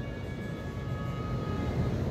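Steady low rumble of background noise, with faint thin high tones over it in the first half.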